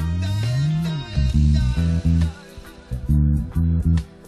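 Electric bass guitar playing a reggae bass line. Near the start one note slides up in pitch and back down, then short, separated notes follow with brief gaps between them.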